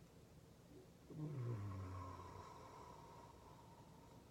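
A woman's low hum, falling in pitch, starting about a second in and lasting just over a second.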